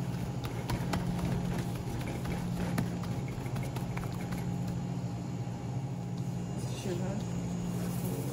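Gloved hands kneading and squishing wet ground-chickpea falafel mixture in a large stainless steel bowl, with small ticks and scrapes against the metal, over a steady low hum.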